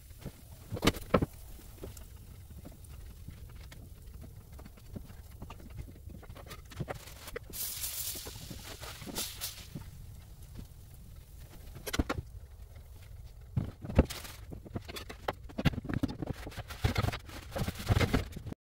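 Cast iron frying pan being handled and wiped out with a paper towel: a few sharp knocks and clunks spread through, and a brief rubbing sound about eight seconds in.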